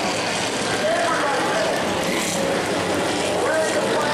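Overlapping spectator voices and short calls from the grandstand over a steady haze of race car engine noise.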